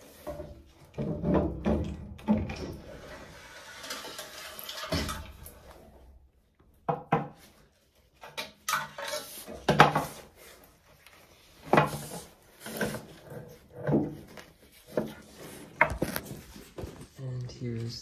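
Metal knocks, clanks and scraping as the combustion cover with its inducer blower attached is worked loose and pulled off a Weil-McLain Ultra 3 boiler's heat exchanger and handled. The sounds come as separate irregular knocks, with a short quiet pause about six seconds in.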